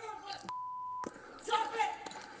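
A single steady, high-pitched censor bleep, about half a second long, starting about half a second in; all other sound drops out while it plays, so it replaces a word in the officer's shouting.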